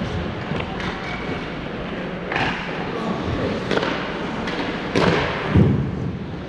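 Scattered knocks and thuds of hockey sticks and pucks striking the ice and boards, echoing in a large indoor rink, with the heaviest thud near the end.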